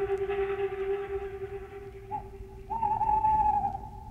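Techno DJ mix in a beatless passage: held electronic synthesizer tones fade down over the first two seconds, then a higher tone bends in and sustains for about a second near the end.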